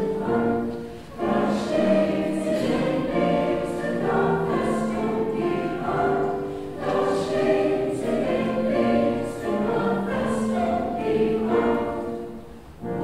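A mixed men's and women's choir singing a German song, with a short break between phrases about a second in.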